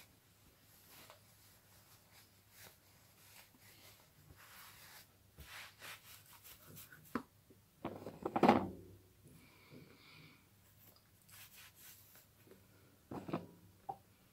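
Hands working oil into locs and scalp: faint rubbing and rustling of hair under the fingers, with a louder brushing sound about eight seconds in and a short one near the end.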